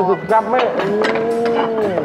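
A cow mooing once: one long call of about a second, after some short vocal sounds at the start. No cow is in the studio, so it is a dubbed comic sound effect.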